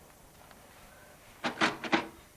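Faint room tone, then about five quick mechanical clacks close together near the end.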